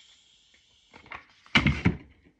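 A single dull thump about one and a half seconds in, from handling the plastic drinking bottle and its parts, after a few faint clicks.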